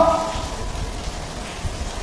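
A man's spoken word trails off just at the start, followed by a steady, even hiss of background noise.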